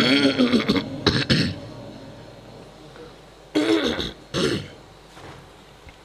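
The end of a chanted Quran recitation phrase breaking off, then a man's short vocal sounds like throat clearing. The clearest two come about three and a half and four and a half seconds in.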